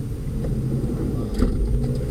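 Van engine idling, heard from inside the cabin as a steady low rumble, with a faint click about one and a half seconds in.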